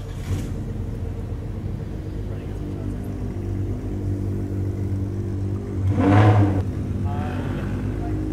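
A Toyota GR Supra's engine running as the car rolls slowly at low speed, a steady low hum, with a brief louder burst about six seconds in.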